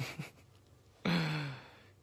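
A man sighs once about a second in: a breathy, voiced exhale whose pitch falls as it fades.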